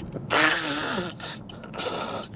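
A man's stifled laugh, snorted out through the nose, about half a second in and lasting under a second, followed by a shorter breathy laugh near the end.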